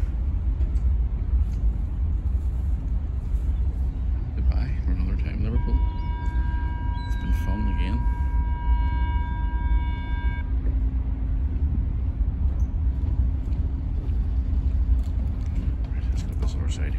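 Wind buffeting a phone microphone over a low, steady rumble on a moving ferry's open deck. About five seconds in, a steady high tone with several overtones sounds for about five seconds and then stops. Faint voices are heard briefly.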